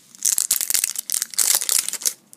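Thin clear plastic shrink-wrap being crinkled and peeled off a plastic toy canister: a dense, loud run of crackles and rustles that starts a moment in.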